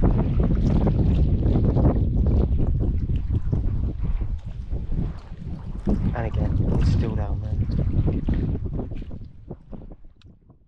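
Strong wind buffeting the microphone over small waves lapping against a stony shore, fading out near the end.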